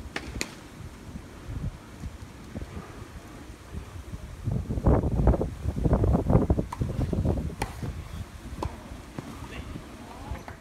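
Wind buffeting the microphone, with a loud gust of low rumbling from about halfway through to near the end. A few sharp taps of a tennis ball being bounced on a hard court before a serve.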